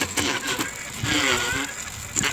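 Homemade e-bike's 250 W chain-drive motor spinning the rear wheel: an electric whine that shifts a little in pitch, with the chain and sprockets rattling.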